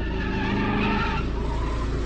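Car engine running with tyres squealing as the car makes a sharp U-turn; the squeal fades after about a second, leaving the engine rumbling on.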